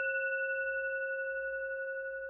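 A single struck bell tone ringing on through several clear overtones, with a slight pulsing waver, slowly fading.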